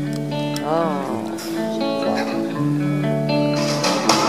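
Opening of a slow gospel song played live: long held sung notes from a man's voice over electric guitar accompaniment.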